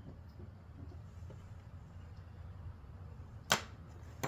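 A metal lock pick with a plastic handle set spinning on a wooden tabletop: faint background hiss, then one sharp knock of the pick on the wood about three and a half seconds in.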